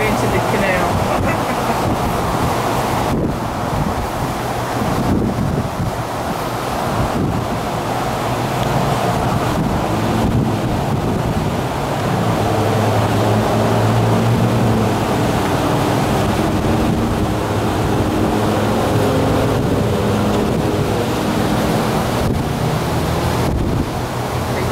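Wind rushing on the microphone with steady water noise. From about ten seconds in, the drone of a passing police patrol boat's outboard motors comes in, is strongest in the middle and fades near the end.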